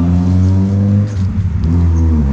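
An engine running steadily, its pitch dipping and wavering briefly a little past a second in.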